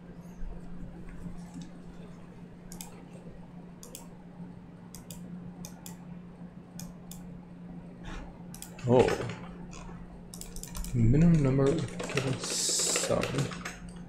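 Computer keyboard typing in scattered keystrokes, with a person's voice sounding briefly about nine seconds in and again in the last few seconds, over a steady low hum.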